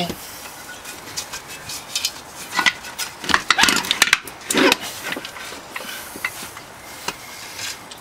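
Mercruiser sterndrive outdrive being pulled back off the transom assembly: irregular metal clunks, knocks and scraping as the heavy drive unit shifts and slides free.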